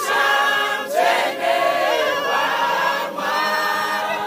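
Mixed choir of women's and men's voices singing a Shona gospel song a cappella in sustained, gliding chords, with two brief breaks between phrases.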